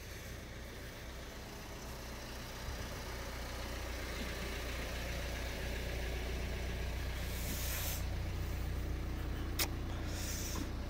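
Car engine idling with a steady low hum that grows louder as it is approached, with a brief hiss about seven seconds in and a single sharp click near the end.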